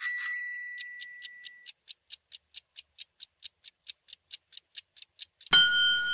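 Countdown-timer sound effect. A bright chime opens it, then a clock ticks about four to five times a second, speeding up slightly near the end. About five and a half seconds in, a louder ringing end tone sounds as the timer runs out.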